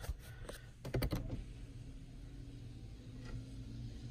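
A few sharp plastic clicks and knocks in the first second and a half, from the overhead switch and the phone being handled in the truck cab, followed by a faint steady low hum.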